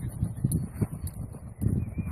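Wind rumbling and buffeting on the microphone in uneven gusts, with faint high ticks repeating about twice a second.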